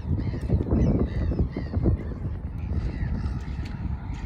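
Wind rumbling on the microphone, with a few knocks and faint bird calls like caws above it.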